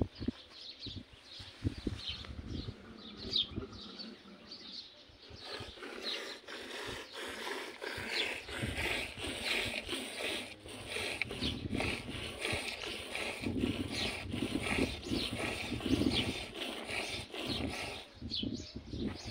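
A camel being milked by hand into a steel bowl: rhythmic squirts of milk hitting the metal and the froth, a few strokes a second, fuller from about five seconds in.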